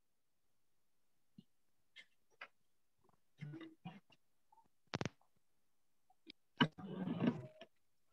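Headset microphone being handled and adjusted over a video call: scattered small clicks and bumps, one sharp click about halfway through, and a louder rustle of handling noise near the end.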